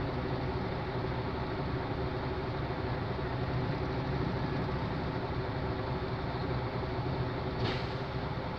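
Mercedes-Benz Actros truck's diesel engine idling steadily, heard from inside the cab.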